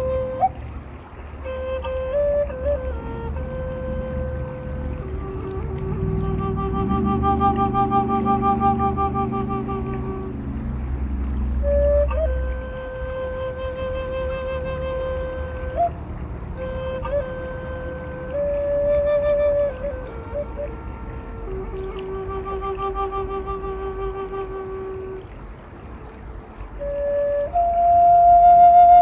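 Native American flute playing a slow melody of long held notes, several swelling with vibrato, with quick grace-note flicks between phrases.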